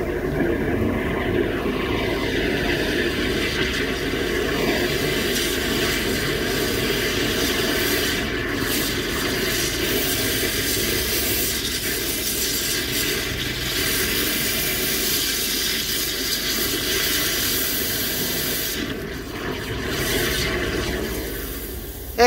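High-pressure drain jetter running: a steady rush and hiss of water as the jet hose works through a blocked drain pipe, with spray escaping from the open pipe fitting, clearing the blockage.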